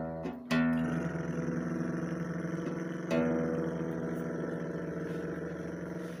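Acoustic guitar strummed: a chord struck about half a second in and again about three seconds in, each left ringing and slowly fading.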